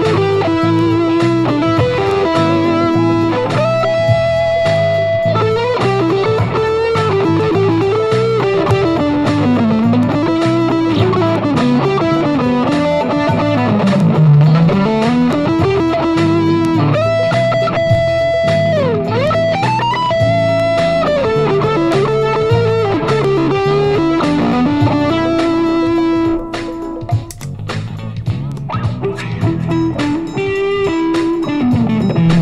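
Electric guitar improvising funk lead lines over a steady repeating backing. The lead notes bend and slide, with one long swoop down in pitch and back up about halfway through. The backing thins out and the music drops in level briefly near the end.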